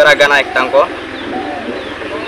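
A man's voice for the first moment, then a dove cooing softly in the background with a few faint bird chirps.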